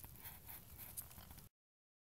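Near silence: faint rustling as fingers lift a flint point out of wet soil, with a light tick about a second in. Then the sound cuts out completely about one and a half seconds in.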